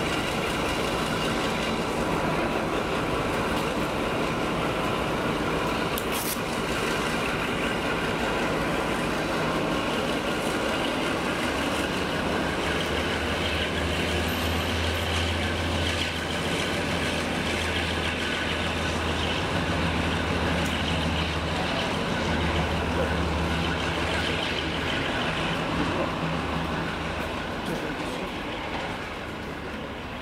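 Class 52 'Western' diesel-hydraulic locomotive running its twin diesel engines as it draws a train slowly along the platform. A steady low throb strengthens a little under halfway through and eases near the end, with a single sharp click about six seconds in.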